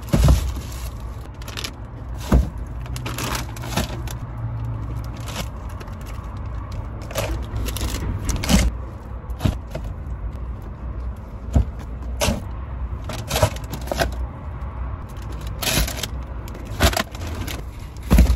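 Groceries being loaded into a car's rear cargo area: irregular knocks and thumps as bags and boxes are set down, plastic bags rustling and a key fob jangling, over a steady low rumble.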